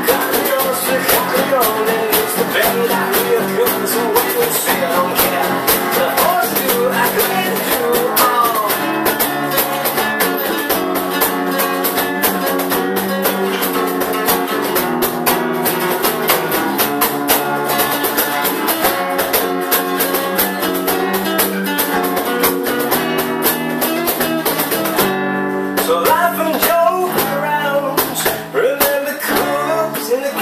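A small acoustic band playing a rock song: several acoustic guitars strummed in steady rhythm over a cajón beat, the chords changing as it goes. About 25 seconds in, the strumming thins out briefly before the full band comes back in.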